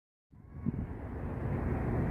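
Low, steady outdoor background rumble that starts about a third of a second in and grows louder over the first second.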